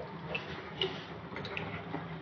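Water dripping from a tap and wet hand into a clay pot of water in a steel sink: a few light, scattered drips, about four in two seconds.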